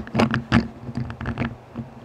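Handling noise from a Hot Wheels Bywayman die-cast pickup with a metal base as it is turned over and set on a table: a quick run of light clicks and taps, most of them in the first second and a half.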